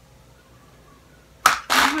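Quiet room tone, then near the end a sudden short breathy burst from a young woman's voice that runs straight into speech.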